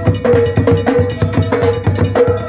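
Ahwash drumming: a large skin drum beaten with two wooden sticks together with hand-played frame drums, in a fast, even rhythm of about four strong beats a second with lighter strokes between.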